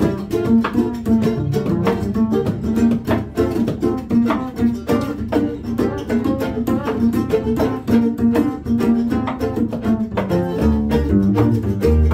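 Acoustic string band playing an instrumental passage: fiddle bowing a melody over strummed and picked acoustic guitar and upright bass. The bass notes grow stronger near the end.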